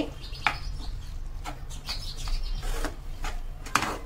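Silicone spatula stirring and scraping chopped vegetables in a nonstick frying pan, a run of irregular scraping strokes.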